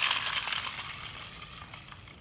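Geared motor of a small plastic toy excavator whirring as the released toy rolls across concrete; the whir is loudest at the start and fades as the motor runs down and the toy rolls away.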